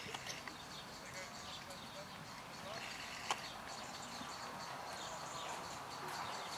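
A horse cantering on a sand arena surface, its hoofbeats soft and muffled, under faint background voices. A single sharp knock comes about three seconds in.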